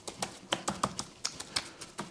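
Plastic seasoning shaker shaken over raw chicken pieces on a metal tray, giving light, irregular clicks and taps, several a second.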